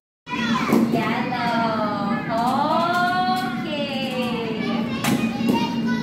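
Voices of young children and adults in a large room, with one drawn-out sing-song voice gliding in pitch in the middle, over a steady low hum. It opens with a split-second dropout to silence.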